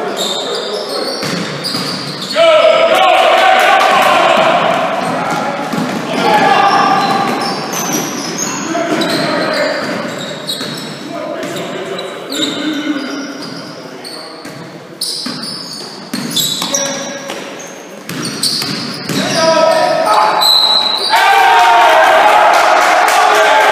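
A basketball game on a wooden sports-hall court: a ball bouncing and feet on the floor, with players' unintelligible shouts echoing in the hall. It is loudest a few seconds in and again near the end.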